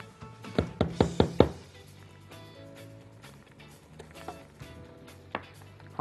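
About five quick knocks of a cooking spatula against the pot in the first second and a half, as tomato paste is added to the tomatoes, then two faint clicks, over soft background music.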